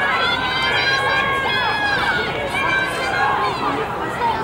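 Several spectators shouting encouragement to the runners at once: loud, overlapping high-pitched calls, some of them held long.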